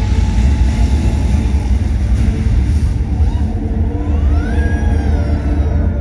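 Loud, steady deep rumble from the castle fireworks and flame show. About four seconds in, a tone rises, holds, then dips slightly.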